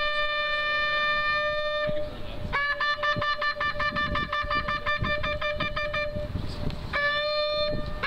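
Shofar blasts: a long held note, then a run of short rapid blasts of about five a second, then another long note starting near the end, in the pattern of the ritual tekiah and teruah calls.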